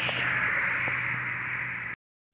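Steady hiss of background noise with a faint low hum and a few faint ticks, cutting off abruptly into silence near the end.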